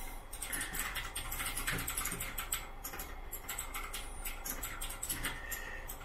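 Faint, rapid, irregular light clicks and taps, like typing, over a low steady electrical hum.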